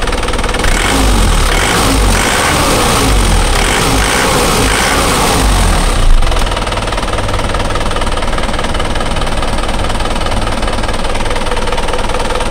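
Honda CB150R's single-cylinder engine revved in a run of quick throttle blips for about six seconds, with a sharp thump about six seconds in, then running steadily at idle. The engine is lubricated with 100% cooking oil in place of motor oil.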